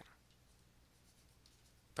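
Near silence: faint room hiss with light scratching of writing.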